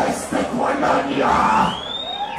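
Goregrind vocalist shouting into the microphone between songs over crowd noise, with a long whistle rising and then falling in pitch near the end.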